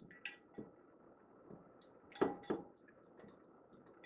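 A whisk clinking against a small glass bowl while beating egg and buttermilk: a few faint, scattered clinks, with two louder ones close together about halfway through.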